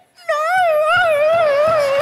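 A long, loud howl that wavers up and down in pitch, starting about a quarter of a second in.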